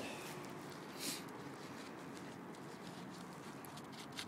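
Faint rustling of a paper towel rubbed over a small carburettor main jet, with one brief louder rustle about a second in, over a low steady hiss.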